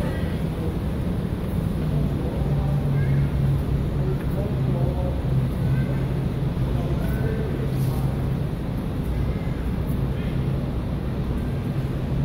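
Steady urban background noise: a continuous low hum with traffic-like rumble, and faint distant voices of passers-by.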